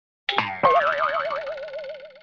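Logo sting sound effect: a quick falling swoop, then a hit and a wobbling, boing-like tone that fades out over about a second and a half.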